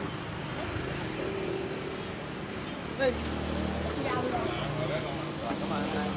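Steady hum of street traffic with faint voices of people around.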